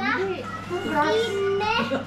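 Only speech: voices talking, with a faint steady low hum beneath.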